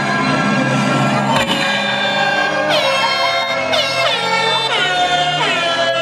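Music over an outdoor concert PA, with a DJ's horn sound effect fired repeatedly over it in the second half, each blast sweeping down in pitch, about once a second.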